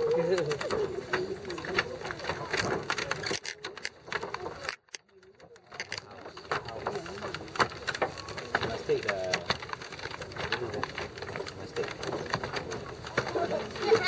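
Footsteps on a bamboo-pole footbridge: the bamboo knocks and clicks underfoot, with indistinct voices around.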